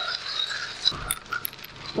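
A drum concrete mixer turning, its wet sand-and-cement mix tumbling and rattling inside while a thin stream of water pours in from a bucket. The sound is a steady hiss with scattered small clicks.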